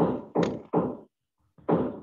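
A person's voice in short, clipped syllables, about three a second, with a brief gap about a second in, heard over a video-call connection.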